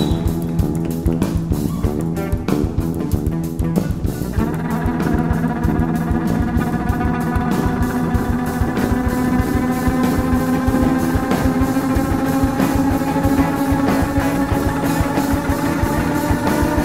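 Live rock band playing an instrumental passage: a fiddle bowed hard over a drum kit with cymbals. About four seconds in, the busy, rapid playing gives way to long held notes ringing over steady drumming.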